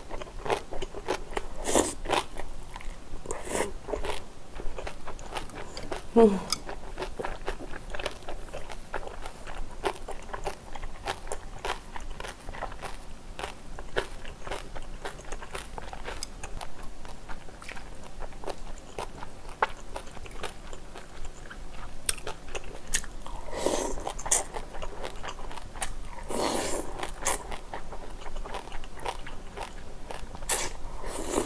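Close-miked chewing and biting of a spicy stir-fried squid and pork belly dish with glass noodles: many wet, crisp mouth clicks and smacks, with a few longer wetter stretches near the end.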